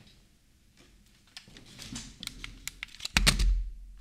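Light clicks and taps of a plastic Stackmat speedcubing timer being handled on a wooden desk, then a heavier thump a little past three seconds in as it is set down and hands are placed on its pads.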